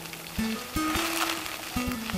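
Background film music: a few plucked string notes, one after another, each ringing on before the next.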